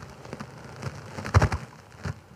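Faint crackling rustle with a few light clicks and one louder tap about one and a half seconds in, picked up by the preacher's close microphone in a pause between words.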